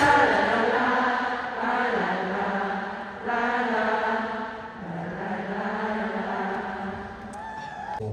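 Many voices singing a slow melody together in unison, with long held notes that step to a new pitch every second or two and fade somewhat near the end.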